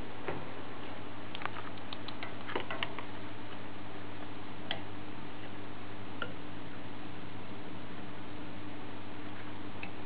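Small sharp clicks and ticks over a steady background hiss and low hum: a handful clustered between about one and three seconds in, then single ones near the middle.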